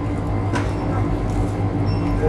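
Steady low hum of a shop's background noise, with a faint click about half a second in.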